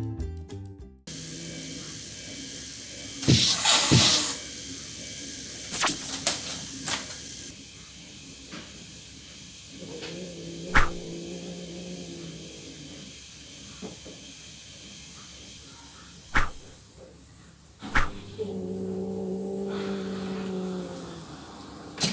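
Two house cats in a standoff: short hisses a few seconds in, then two long low growls, one about ten seconds in and another near the end, with a few sharp knocks of paws and bodies against furniture in between.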